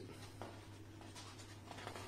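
Faint rustling of drawing-paper pages being leafed through by hand, a few soft paper swishes.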